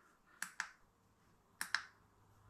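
Two quick pairs of sharp clicks about a second apart: the button of a small handheld wireless remote being pressed, sending the command that starts the race countdown timer.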